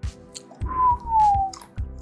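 Beer being poured from a bottle and a can into glasses over background music. About half a second in, a loud whistle-like tone slides slowly downward for about a second.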